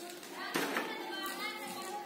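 Background voices, children's among them, with no clear words; one voice rises louder about half a second in.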